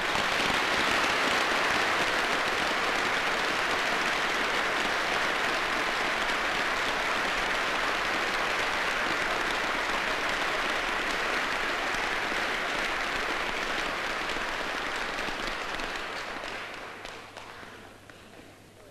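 A large audience applauding: many hands clapping together in a dense, even sound that starts suddenly, holds steady, and fades away near the end.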